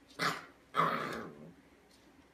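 Puppy barking twice, a short bark and then a longer, drawn-out one.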